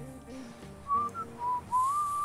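A person whistling a tune in a few clear notes, starting about a second in, over soft background music.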